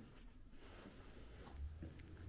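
Faint scuffing of footsteps on a dusty floor over quiet room tone, with a brief low rumble about one and a half seconds in.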